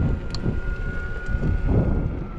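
Wind noise on the microphone of a moving electric unicycle, with a faint steady high whine from its hub motor.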